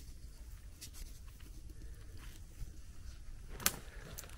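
Faint low rumble of a moving, handheld camera, with a few soft crackles and one sharper click near the end as mushrooms are lifted out of spruce needle litter.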